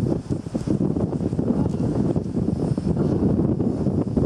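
Wind buffeting the camera microphone: a loud, low, fluttering noise that holds throughout.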